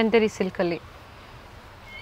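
Three quick pitched vocal sounds in the first second, then low steady background noise.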